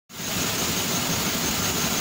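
Large sawmill band saw running steadily with no load, a constant machine hum with a thin high whine above it, before the blade meets the log.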